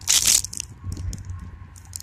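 A foil-plastic blind-bag toy packet crinkling as a gloved hand picks it up and tears it open: a louder crinkle in the first half-second, then lighter crackling.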